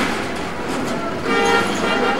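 A single short horn toot, steady in pitch and lasting about half a second, a little past the middle, over the general bustle of a busy street market.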